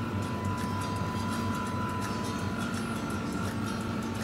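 Steady low hum of a supermarket's open refrigerated display cases, with a thin steady tone through the first two seconds and faint scattered ticks.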